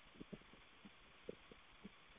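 Near silence: room tone in a pause of speech, with a few faint, brief low blips.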